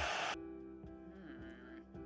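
Soft background music from an animated short playing back, starting right after a brief rushing noise at the very beginning.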